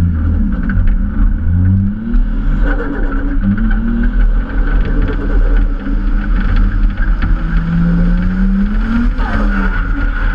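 Toyota Chaser JZX100's engine accelerating hard, its pitch climbing and then dropping three times as the revs rise and fall, over a steady low road rumble.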